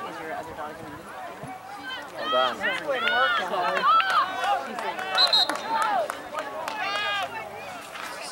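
Several people's voices calling out and talking over one another, some high-pitched, with no single speaker standing out.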